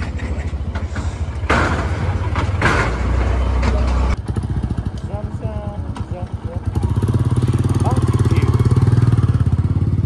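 Motorcycle engines running at idle, a steady low pulsing note with a few brief voices over it. The sound changes abruptly about four seconds in, and a louder, steady engine note takes over from about seven seconds.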